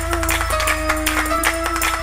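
A church band playing fast praise-break music, with held keyboard notes over a quick, driving drum beat and heavy bass.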